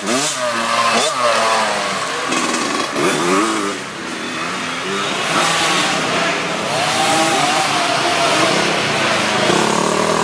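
Small youth dirt bike engines revving, their pitch climbing and dropping again and again with the throttle. One bike passes early on and another comes closer near the end.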